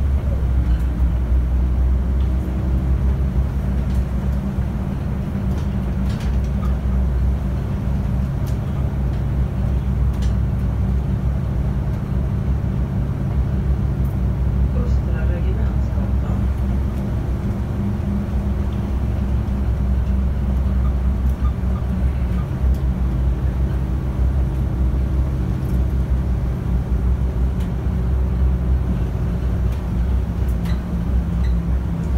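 Inside a Volvo city bus while it drives: the steady low drone of the engine and drivetrain, with tyre and road noise and a few light interior rattles.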